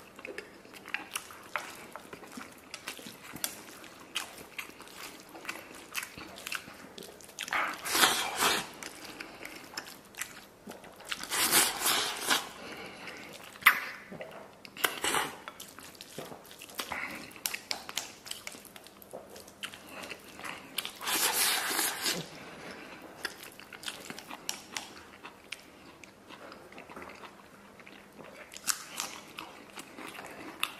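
Close-miked eating sounds: a man chewing and smacking mouthfuls of rice mixed with tomato-and-egg stir-fry and pork, with small clicks from chopsticks on the ceramic bowl. Louder bursts come as he shovels food in, about 8, 12, 15, 21 and 29 seconds in.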